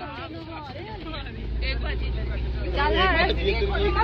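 A motorboat's engine starts about a second in and then runs steadily with a low hum, under people's voices.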